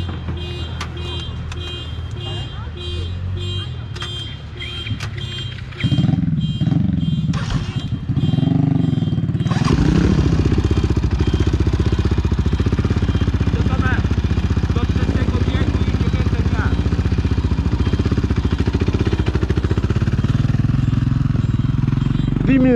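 Yamaha Raptor 700R quad's single-cylinder engine running, revved a few times about six seconds in. From about ten seconds in, an engine runs loud and steady close to the microphone.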